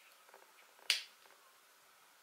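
A plastic flip-top cap on a shower-cream bottle snapping open with one sharp click about a second in, after a few faint handling clicks.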